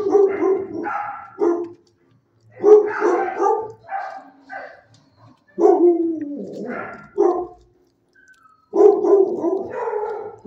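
Dogs barking repeatedly in four bursts of a second or two each, with short pauses between them.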